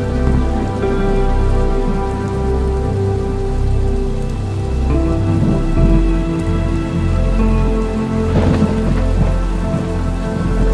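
Rain with thunder mixed with ambient music: sustained chords that shift about halfway through over a deep pulsing bass. A thunder clap comes near the end.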